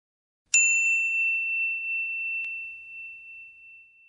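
A single bright bell-like ding, struck about half a second in and ringing out slowly over some three seconds, with a faint tick partway through: a record-label logo chime.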